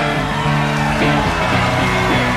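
Electric guitar ringing out sustained chords at a loud live punk rock show, shifting to new chords about a second in and again soon after.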